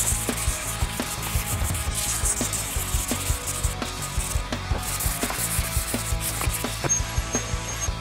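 240-grit sandpaper rubbed back and forth by hand along a painted metal mountain bike handlebar, scratching off the old paint in repeated strokes.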